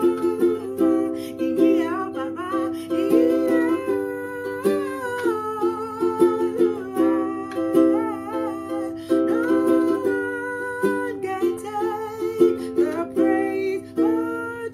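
A woman singing a praise song while strumming chords on a ukulele, her voice gliding over the steady strummed chords.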